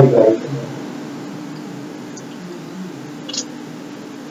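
A loud pitched call with a clear tone trails off in the first moment. A faint steady low hum follows on an open microphone, with a faint tick a little after three seconds in.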